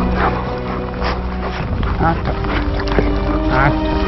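Background music of sustained notes, with a dog giving three short, high-pitched whines over it: at the start, about halfway through and near the end.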